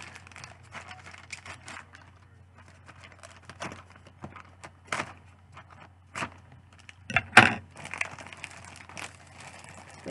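A thin plastic shipping bag being cut open with scissors and pulled apart: crinkling and rustling with scattered sharp crackles, loudest in a burst about seven seconds in.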